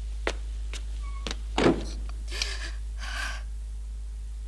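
Footsteps on a hard floor, then a door shutting with a thud, followed by two short rasping noises.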